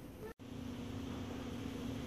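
Quiet room tone: faint background noise, a brief total dropout about a third of a second in, then a steady low hum with one held tone.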